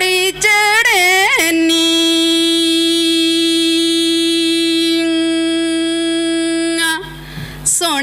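A woman singing a Punjabi folk song into a microphone: a few quick ornamented turns, then one long held note of about five seconds, a short breath, and the next phrase starting near the end.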